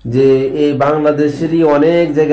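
A man's voice in a chanted, sing-song delivery, syllables drawn out on long held pitches.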